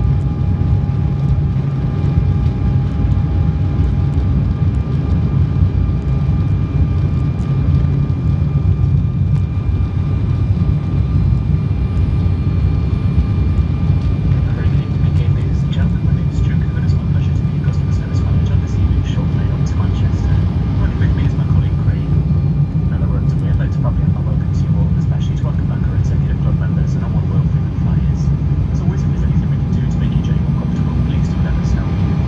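Steady cabin noise of an Embraer E190 airliner in flight: a deep drone of the airflow and its General Electric CF34 turbofan engines, with a few faint steady whine tones above it.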